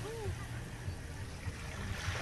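Small waves washing gently on a shallow sandy shore, a soft, steady wash. Near the start comes one short rise-and-fall call, like a distant voice.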